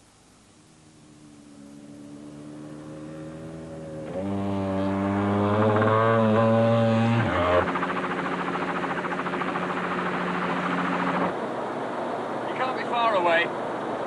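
Helicopter in flight, its steady drone fading up over the first few seconds until it is loud. The sound then drops abruptly and carries on steadily.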